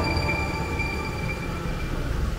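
Compact track loader's diesel engine idling: a steady low rumble with a thin, steady high whine over it.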